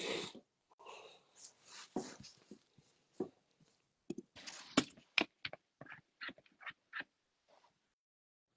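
Faint handling noise of a phone: soft rustles, then a string of sharp clicks and taps over a few seconds, cutting in and out.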